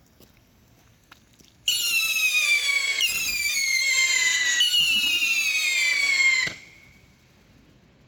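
Several Klasek Mini Scream Rockets launching together, their screaming whistle motors starting suddenly about two seconds in. They sound several pitches at once, each slowly falling in pitch through the climb. The screams cut off together about six and a half seconds in as the motors burn out.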